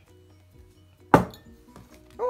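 A glass measuring cup set down on the table with one sharp clink about a second in.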